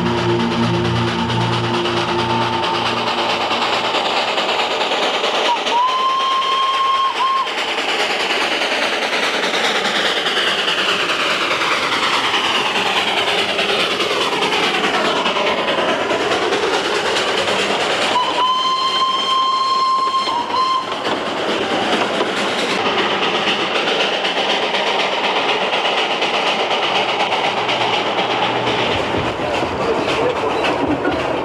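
Darjeeling Himalayan Railway narrow-gauge steam train running, with two whistle blasts: a short one about six seconds in and a longer one of about two and a half seconds about eighteen seconds in.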